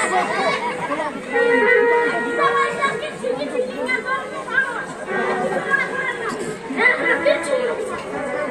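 Several voices talking over one another, in a lively jumble of speech.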